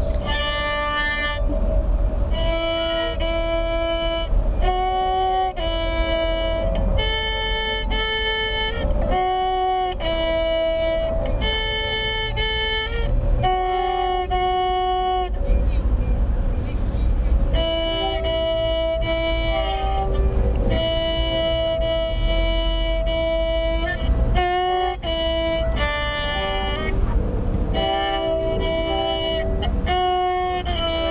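A violin played with the bow: a simple tune of separate held notes, starting about a second in, with a short break about halfway through. A low rumble runs underneath.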